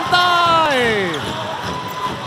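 A basketball being dribbled on a hardwood arena court. A commentator's voice draws out a falling word over it in the first second.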